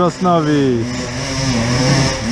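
Enduro motorcycle engine revving on a steep dirt climb, its pitch falling over the first second and then holding steady, with a person's voice over it.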